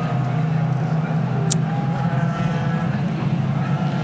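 IndyCar field's Honda V8 engines running at low, steady revs as the cars circulate slowly behind the pace car under caution: an even, unchanging drone.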